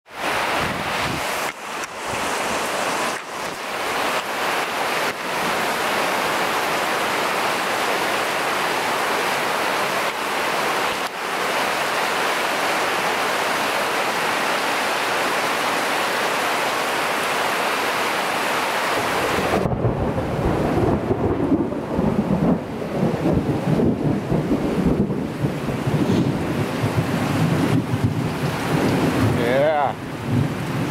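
Heavy tropical rain falling steadily on rainforest foliage, a dense even hiss. About two-thirds of the way through, the hiss thins and a low, uneven rumble takes over.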